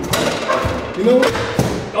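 Several sharp knocks and thumps as a double-hung window sash is handled and forced, the clearest near the start and about a second and a half in.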